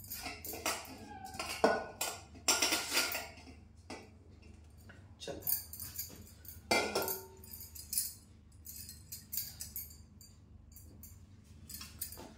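A steel ladle knocking and scraping against a steel cooking pot and bowl in irregular strokes. Glass bangles on the moving wrist jingle with each movement.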